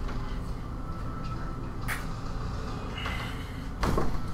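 Handling noise from a video camera being picked up and moved: a steady low rumble, a sharp click about two seconds in and a louder knock near the end.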